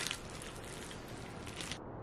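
Faint sounds of biting and chewing into a foil-wrapped wrap, with light crackle from the foil wrapper. The sound drops away abruptly near the end.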